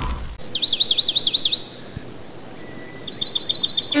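Birdsong: two fast trills of repeated high chirps, the first about half a second in and the second near the end, with a quieter hiss between them. A loud noisy effect fades out in the first moment.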